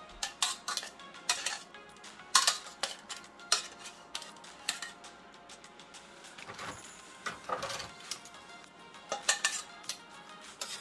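Metal kitchen tongs clinking and clanking against a stainless-steel saucepan and a wire oven rack in irregular, sharp clicks as chicken pieces are dipped in marinade and set back on the rack. Soft background music runs underneath.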